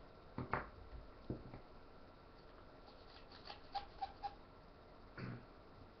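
Faint handling sounds of cutting 35mm film free of its canister and handling a plastic developing reel: a few scattered clicks and snips, the sharpest within the first second, and a light knock near the end.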